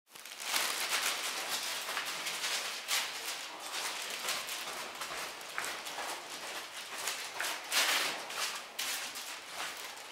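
Irregular footsteps and rustling handling noise from someone walking down a stairwell while carrying the camera.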